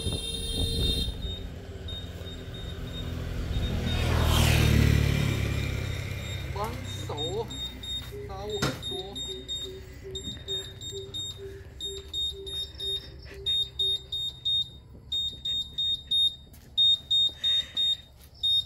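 A vehicle passes by, its sound swelling and falling in pitch about four to five seconds in. From about eight seconds a high, steady electronic beep repeats in short pulses, about one to two a second, with a single sharp click among them.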